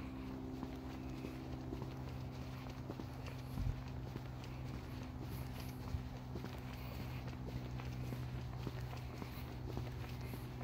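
Footsteps walking along a paved path, over a steady low hum, with one louder thump a little under four seconds in.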